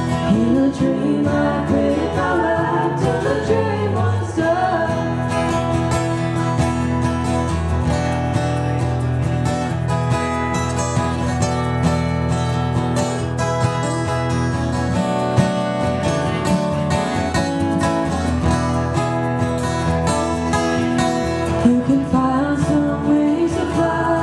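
Live acoustic country-folk music: two acoustic guitars strumming steadily, with singing over them for the first few seconds and coming back in near the end, and a guitar-only stretch in between.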